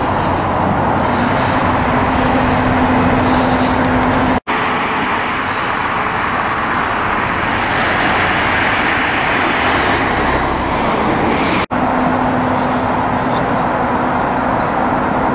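Steady road traffic noise, with a low steady hum in the first few seconds and again near the end. The sound drops out briefly twice.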